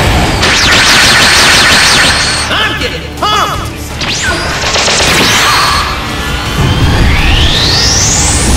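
Background music with fight sound effects: crashing impacts and whooshing swishes, and a long rising whistling sweep near the end.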